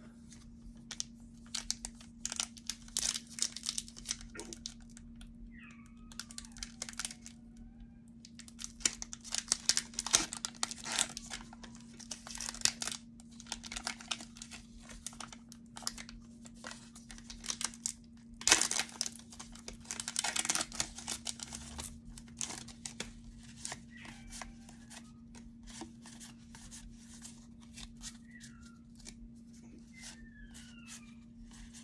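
Foil Pokémon booster pack wrappers being torn open and crinkled in the hands, in three louder bouts of crackling with lighter rustles between, as the cards are pulled out.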